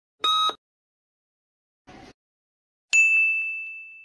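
Quiz-video sound effects: a last short electronic countdown beep, then at about three seconds a bright chime that rings out and fades over a second as the answer is revealed.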